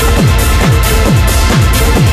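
Hard techno from a DJ mix: a heavy kick drum about twice a second, each hit dropping in pitch, under dense hi-hats and sustained synth tones.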